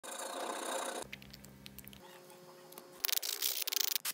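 A hand file rasping against a small painted metal jig head for about a second, then a quiet stretch with a faint hum, then a quick run of short scraping strokes near the end.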